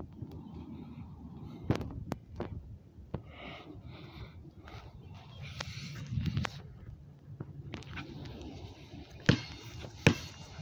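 Footsteps and rustling through long grass, with scattered light knocks and a sharper thump near the end.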